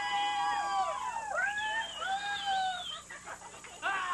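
Several voices howling together in long, high, overlapping calls that glide down and back up. They pause near the end of the third second and start up again just before the end.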